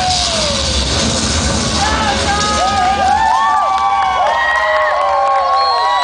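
Dance music with a beat that drops out about halfway through, while an audience cheers and whoops, with many overlapping rising-and-falling 'woo' calls.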